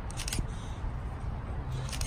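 Wind rumbling on the microphone outdoors, with two brief bursts of crisp clicking, one just after the start and one near the end.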